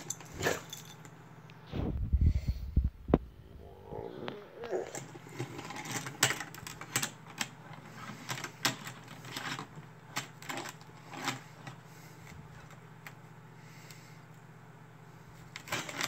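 A die-cast toy truck pushed across thin ice in a metal baking pan: irregular clicks and scrapes as its wheels grind and break up the ice, with a low rumbling thump about two seconds in.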